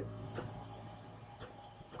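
Faint room tone with a low, steady electrical hum and two faint soft ticks, about half a second and a second and a half in.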